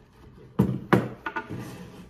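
Skateboard trucks and deck knocking against a wooden tabletop: two sharp knocks, then a few lighter clicks, as the removed trucks are set down and the deck is handled.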